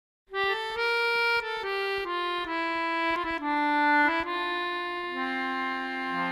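Squeezebox playing an instrumental introduction: a melody of reedy notes over chords that starts just after the opening, then settles into longer held notes near the end.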